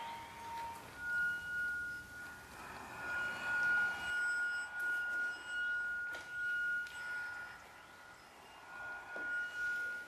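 A sustained, pure ringing tone, like a struck bowl or tuning fork, held on one high pitch with a faint higher overtone and swelling and fading in loudness. A lower held tone dies away about a second in, just as the high one begins.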